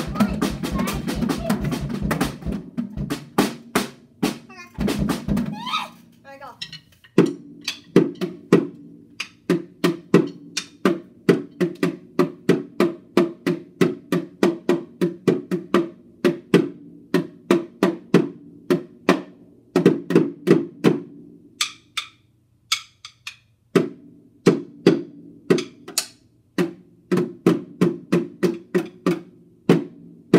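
A child beating a small drum with drumsticks. It starts with a fast, loud flurry of strikes, then settles into a steady run of single hits, about two or three a second, with a short break about eight seconds before the end.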